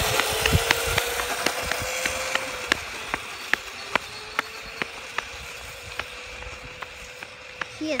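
Small electric kick scooter's motor whining as it pulls away, its pitch rising slowly as it speeds up and then holding steady while it fades into the distance. Short regular clicks, about three a second, run alongside.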